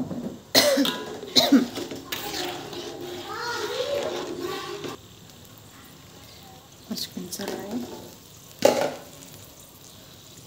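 Indistinct speech with a child's voice among it, mostly in the first half, broken by a few short sharp bursts about half a second, a second and a half, and nearly nine seconds in.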